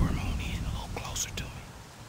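A man whispering, over a low rumble that fades away toward the end.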